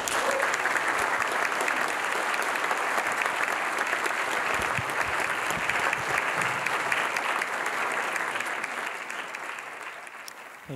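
Audience applauding steadily, the clapping dying down near the end.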